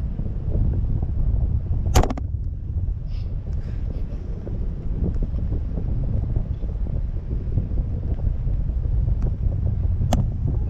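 Wind buffeting the microphone as a parasail rig hangs in the air, a steady low rumble. A sharp knock comes about two seconds in, and another at the very end.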